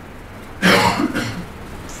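A man clearing his throat with a short, harsh cough just over half a second in, trailing off briefly.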